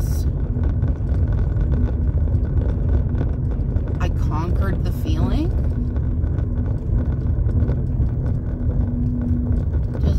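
Car being driven: a loud, steady low rumble of road and engine noise heard inside the cabin.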